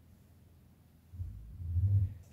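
Near silence, then about a second in a low rumble starts and builds for about a second.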